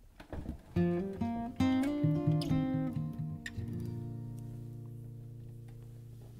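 Acoustic guitars playing the closing phrase of a song: a short run of plucked and strummed notes about a second in, then a final chord that rings on and slowly fades.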